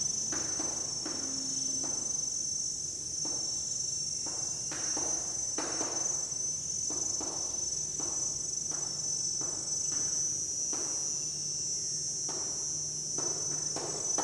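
Chalk writing on a chalkboard: irregular short scratches and taps as each character is stroked out, over a steady high-pitched background drone.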